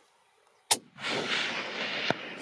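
A single hunting-rifle shot fired at a red stag, a sharp crack about three quarters of a second in, followed by a long rolling tail of noise that lasts more than a second.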